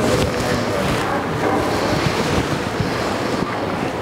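A steady rushing noise on a clip-on microphone, at about the level of the speech around it.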